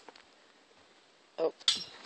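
Mostly quiet background, then near the end a woman's short "oh" followed at once by a brief, sharp burst of noise.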